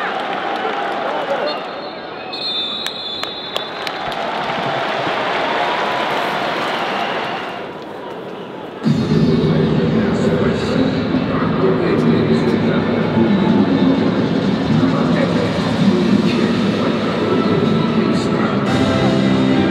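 Live football-stadium ambience with distant voices over a noisy crowd haze. About nine seconds in, background music cuts in suddenly and carries on, louder than the ambience.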